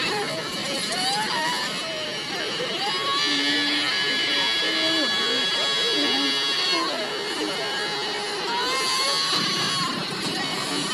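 Several high-pitched cartoon voices screaming and wailing over one another, with one long held shriek lasting nearly four seconds in the middle.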